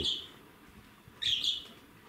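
A small bird chirping briefly about a second in, a short high-pitched call.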